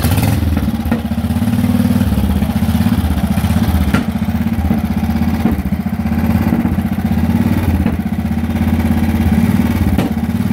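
1961 Panther 650's big single-cylinder engine running at a steady idle, freshly kick-started with the ignition set retarded.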